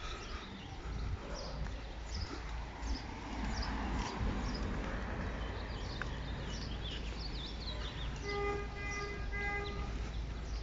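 Birds chirping again and again over the low, steady hum of street traffic. Near the end, a pitched beeping tone sounds three times in quick succession.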